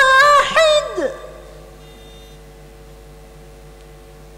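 A woman's melodic Quran recitation (tarannum): a long held, ornamented note that falls away and ends about a second in, leaving a pause with only a faint steady hum.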